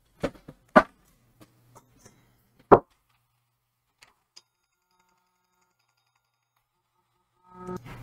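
A few light knocks and taps of a laptop charger's plug and cable being handled on a desk, the loudest just under three seconds in.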